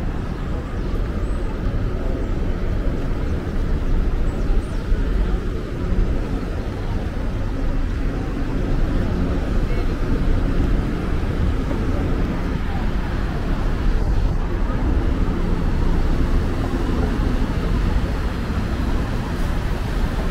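Steady city traffic noise: a continuous low rumble of vehicles on the avenue, with no single event standing out.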